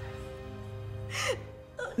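Soft background music with held, steady chords, and a woman's sobbing gasp about a second in that trails off falling in pitch.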